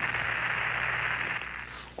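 Steady radio static hiss on the Apollo 11 air-to-ground communications link, with no voice on it, fading away near the end.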